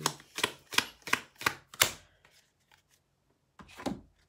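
A deck of tarot cards being shuffled by hand: about six sharp card slaps in the first two seconds, roughly three a second, then a pause and one more slap near the end as a card goes down on the table.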